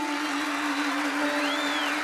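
A woman's voice holding one long sung note with a slight waver, unaccompanied, over a steady hiss.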